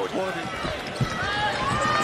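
Basketball game sound from the court: the ball thudding on the hardwood floor a few times and sneakers squeaking in short gliding chirps, over a steady arena crowd murmur.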